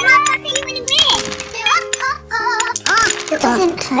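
Cartoon character voices talking quickly in high voices over background music with held notes and a low bass line.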